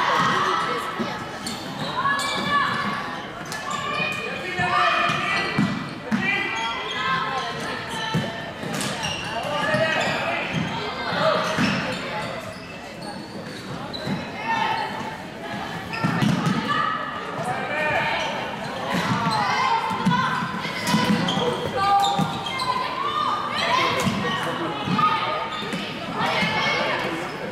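Floorball game in a sports hall: players' voices calling out back and forth, echoing in the hall, with sharp clicks of sticks striking the plastic ball at irregular moments.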